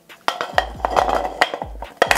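Metal reflector being fitted onto the Bowens mount of a Godox LED studio light: several light metallic clicks and knocks with some scraping as it is seated on the mount.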